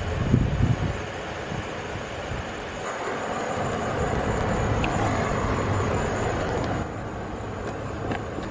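Used engine oil pouring through a plastic funnel into an empty plastic oil jug, a steady pour from about three seconds in until near the end.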